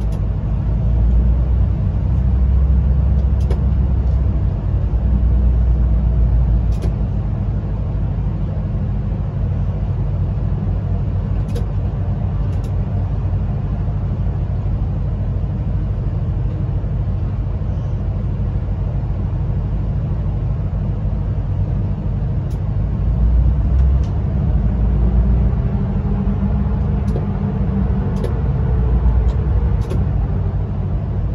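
Train running through a long rock tunnel, heard from the driver's cab: a steady low rumble of wheels on rail that swells a little twice, with a few faint ticks.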